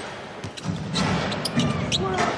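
A basketball dribbled repeatedly on a hardwood court, against the background noise of an arena.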